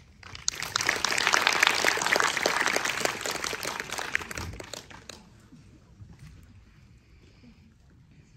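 Cinema audience applauding: a dense patter of clapping that starts about half a second in and dies away by about five seconds.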